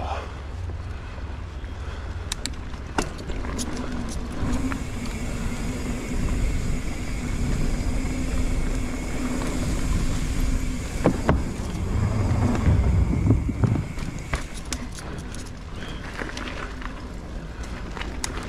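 Mountain bike rolling over a dirt trail: a steady rumble of tyres and wind on the camera, with knocks and rattles from bumps. About twelve seconds in there is a louder rumble with sharp knocks as the tyres cross the boards of a wooden footbridge.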